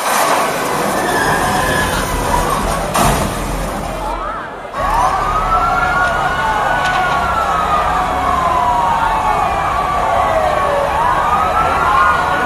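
Siren-like wail played over PA loudspeakers as the intro of the dance track. It sweeps up in pitch, slides slowly down over several seconds, then sweeps up again near the end, over crowd noise, with a brief dip about four seconds in.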